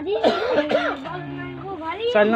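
Human voices, with a short cough near the start followed by a held, low-pitched vocal sound.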